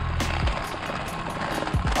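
Background music with a steady beat: low sustained bass notes under regular sharp high ticks.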